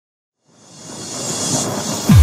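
Rushing white-noise swell of a trance track's intro, fading in from silence about half a second in and building steadily.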